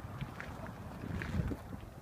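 Wind buffeting the microphone, an uneven low rumble, with a few faint ticks over it.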